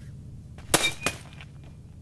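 A baseball bat strikes an open laptop and slams its lid shut. There is one loud crack with a brief metallic ring, then a smaller knock about a third of a second later.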